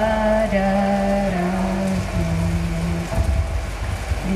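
A woman singing a slow melody into a microphone over a PA system, holding long notes that step down in pitch, over a steady crackling hiss.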